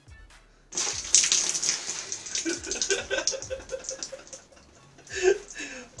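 Thick tomato soup pouring from a tin onto a man's head and splattering into the shower tray. It starts suddenly about a second in and tails off after a few seconds. A man's pained vocal noises run over the pour.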